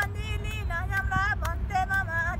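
An elderly couple singing a song in long, held notes that bend in pitch, with a few sharp hand claps. A steady low wind rumble on the microphone runs underneath.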